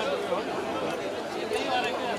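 Indistinct chatter of many voices, with no clear words.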